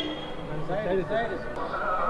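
Crowd voices talking and calling out, with a shrill, wavering voice about halfway through and a steady high tone starting near the end.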